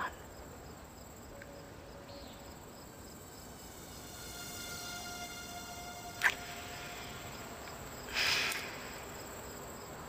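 Crickets chirping steadily in a night-time background. Faint held tones swell in the middle, a sharp click comes about six seconds in, and a short hissing burst follows about two seconds later.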